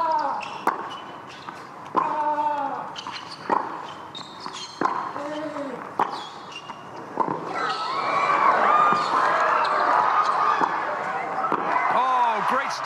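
Tennis rally: racket strikes on the ball about every second and a quarter, several followed by a player's loud grunt. About seven and a half seconds in, the rally ends and the crowd cheers and shouts.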